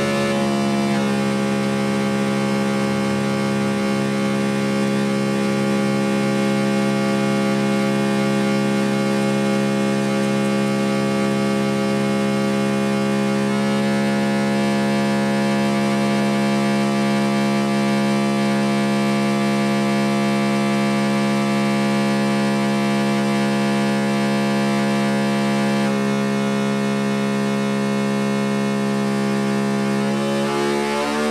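Modular synthesizer drone: a dense low chord of steady held tones with a horn-like quality, unbroken throughout. The upper texture shifts about midway and again later, and near the end the pitches begin to slide upward.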